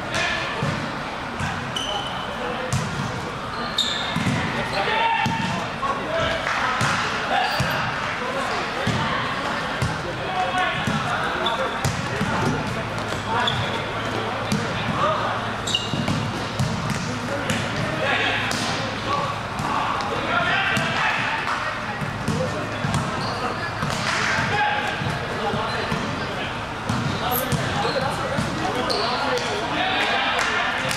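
Indoor volleyball rally: repeated sharp smacks of the ball being struck and hitting the floor, among players' indistinct shouts and chatter, echoing in a large gym.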